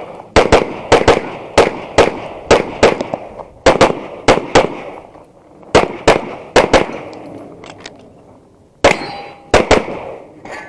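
Rapid semi-automatic pistol fire, the shots coming mostly in quick pairs, with a brief pause about five seconds in and a longer one before the last few shots. Near the end a hit on a steel target rings briefly after a shot.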